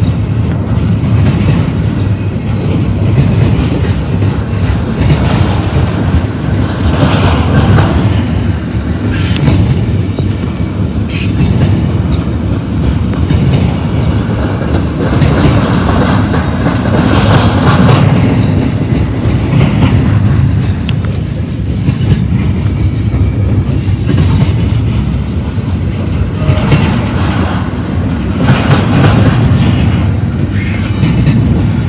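Double-stack intermodal freight cars rolling past close by: a continuous heavy rumble of steel wheels on rail with clickety-clack clatter, rising to harsher, higher-pitched flares several times as the cars go by.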